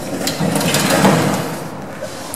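Lift shaft landing door being pushed open by hand from inside the shaft, its sliding panels running along their track with a steady mechanical rattle that is loudest about a second in and then eases off.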